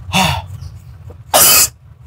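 A man coughing twice to bring up phlegm stuck in his throat: a short throaty cough at the start and a much louder one about a second and a half in.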